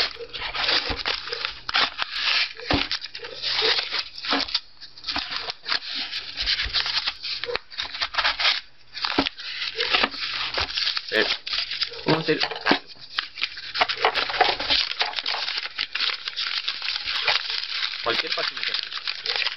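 Paperback book pages being ripped and slashed with a knife blade, then torn and crumpled by hand: a continuous, irregular run of paper tearing and rustling.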